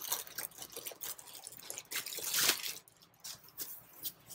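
Packaging rustling and crinkling as an item is unwrapped by hand: scattered crackles, with a louder rasping rustle about two and a half seconds in.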